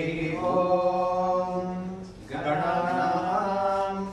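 Vedic chanting by monks: long held vocal lines of a Sanskrit mantra on a few steady notes, pausing briefly for breath about two seconds in before going on.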